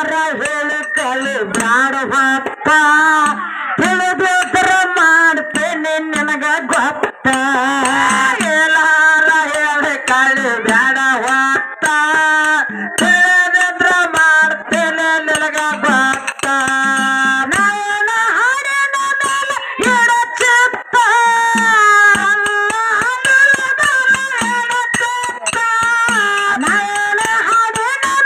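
A woman singing a Kannada folk song into a microphone, with a hand drum beating a steady rhythm under her voice.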